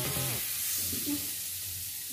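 A beef burger patty sizzling steadily as it fries in oil in a frying pan.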